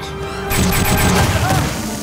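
Dramatic background music, joined about half a second in by a sudden loud crash-like sound effect with a deep rumble that runs on under the score.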